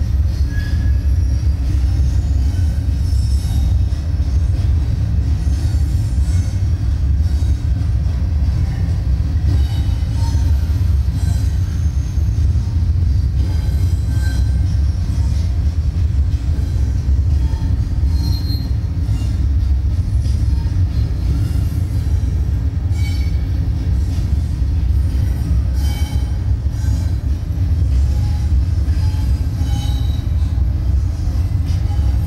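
A steady low rumble with brief, faint high-pitched squeaks scattered through it.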